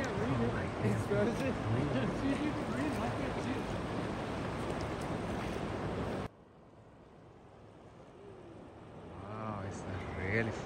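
Rushing river rapids with faint voices over them; about six seconds in the sound cuts suddenly to a much quieter steady river noise, and voices come back near the end.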